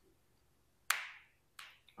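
Two sharp taps of a small hard object, the first about a second in and a fainter one near the end.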